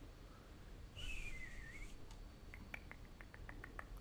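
A faint short whistle that falls in pitch about a second in, then a quick run of about ten light clicks, several a second, from computer input at the desk.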